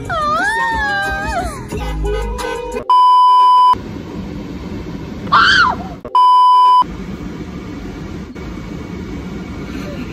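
Two flat, high electronic bleeps, each under a second long and about three seconds apart, that replace the audio beneath them like a censor bleep; they are the loudest sounds. A short high-pitched voice squeal comes between them.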